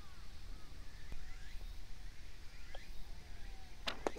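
A faint tap of a putter striking a golf ball about a second in, then a sharper click near the end as the holed putt drops into the cup.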